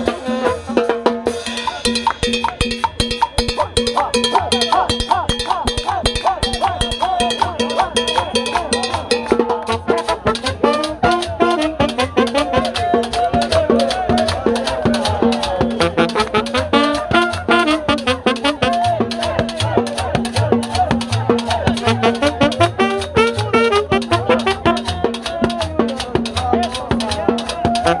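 Live band music played right in the crowd: brass horns carrying a lively melody over a steady drum beat, with a double bass, and crowd voices mixed in.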